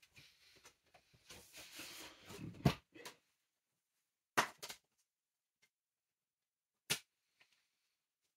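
Rustling, then a few sharp clicks or knocks: a loud one about two and a half seconds in, a quick double click near the middle, and one more a little before the end.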